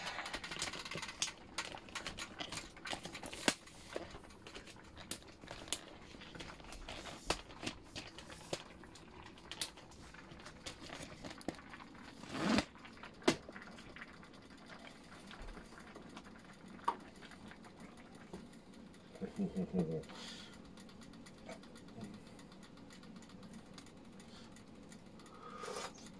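Faint, irregular crackling and popping of food cooking in a steel pot on an electric hot plate. A short vocal sound breaks in about halfway through, and a few more around three quarters of the way in.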